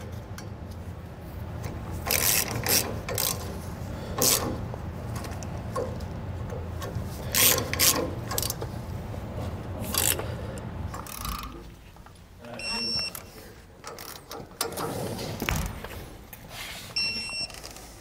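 Socket ratchet clicking in bursts as it runs nuts down onto the studs of a trailer disc-brake caliper mounting bracket. Two short high beeps sound in the last third.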